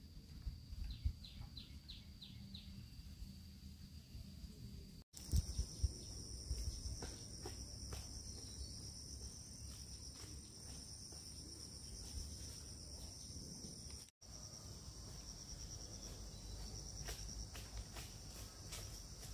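Insects chirring in a steady high-pitched drone, louder after about five seconds, with soft footsteps on a dirt path and a few louder thumps about five seconds in.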